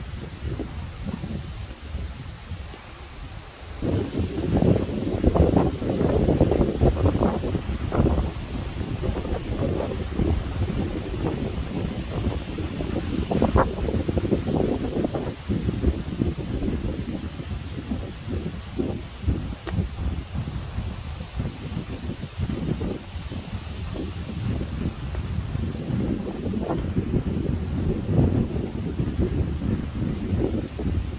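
Wind buffeting the microphone in irregular gusts, a low rumble that grows stronger about four seconds in.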